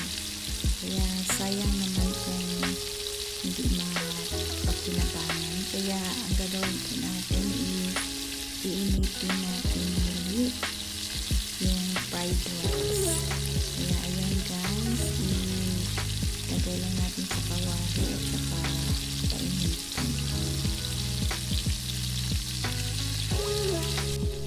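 Leftover fried rice sizzling in a nonstick wok, with repeated scrapes and taps of a spatula as the rice is stirred and tossed, over background music.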